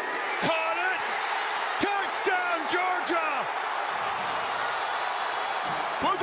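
Large stadium crowd cheering a touchdown, a steady roar throughout, with a man's excited shouts over it in the first half.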